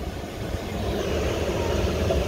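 The 2019 Ford F-150's 5.0 L V8 idling, heard inside the cab as a steady low rumble with a light hiss over it that grows slightly about a second in.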